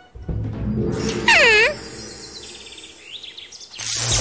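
Cartoon soundtrack: a swish about a second in, then a short vocal-like sound that dips and rises in pitch, over light background music.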